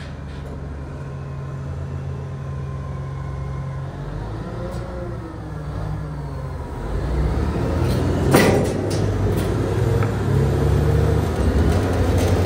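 Heavy Caterpillar wheel loaders' diesel engines running while their steel arm attachments push against a marble column. The engines rise under load about seven seconds in, with a single sharp knock a little after eight seconds.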